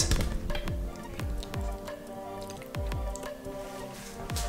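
Background music: a steady beat with a deep kick drum under held chords.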